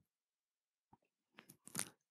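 Near silence, broken in the second half by a few faint, short clicks.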